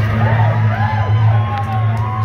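Live rock band holding a low bass note and a long sustained guitar tone while the drums pause, with several short whoops from the audience over it.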